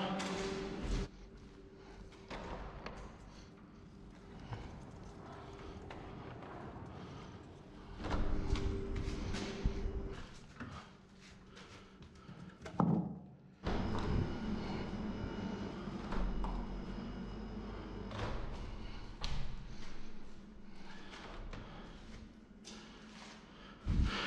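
Window and balcony-door handles clicking, frames knocking and doors swinging open, with footsteps, as the windows are opened one after another. A low steady hum runs underneath.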